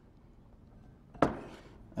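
A single sharp knock of a kitchen knife on a plastic cutting board about a second in, trailing off in a short scrape as diced mango is pushed off the board. Faint room tone before it.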